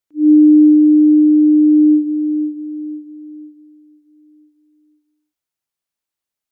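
A single steady electronic tone, low to middling in pitch and loud for about two seconds, then fading away in steps, each about half a second apart, until it dies out about five seconds in.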